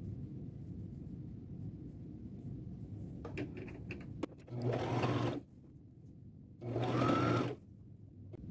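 A Brother electric sewing machine runs in two short bursts of about a second each, its motor whine rising as it speeds up, stitching a short seam to join the two ends of a cotton ruffle. Fabric is handled faintly before the first burst.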